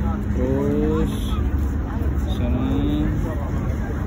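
Busy street ambience: a steady low rumble of road traffic, with brief snatches of passersby's voices about half a second in and again near three seconds.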